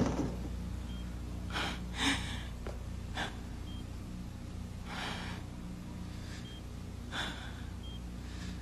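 A person breathing audibly: a handful of soft gasps or breaths a second or two apart, over a low steady hum. A faint short high beep recurs every few seconds.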